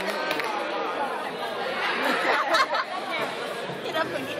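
Several men talking and calling out over one another in a large gym, with louder shouts about halfway through.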